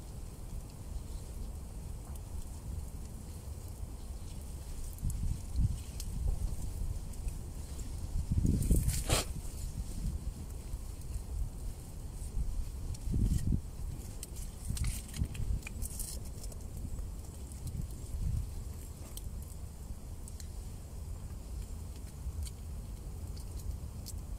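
Small campfire of reed stalks and sticks crackling with scattered sharp pops, over a steady low rumble. About nine seconds in there is a louder knock with rustling.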